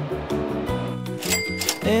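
Background music with a cash-register 'ka-ching' sound effect ringing out about a second and a half in.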